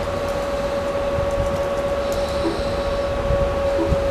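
Scattered computer keyboard keystrokes, a few light taps as a command is edited, over a steady room hum with a constant mid-pitched tone.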